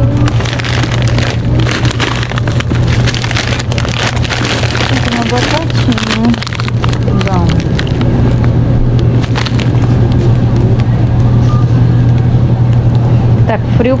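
Plastic packaging crinkling and rustling during the first few seconds as a large bag of frozen fries is taken from a freezer case and handled. A steady low hum runs underneath, with faint voices in the background.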